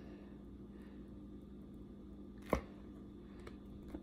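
Faint handling noise of a silicone mold being worked off a stuck cured resin block, with one sharp click about two and a half seconds in, over a steady low hum.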